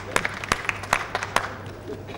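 Scattered clapping from a small audience: a run of sharp, uneven claps that dies out about a second and a half in.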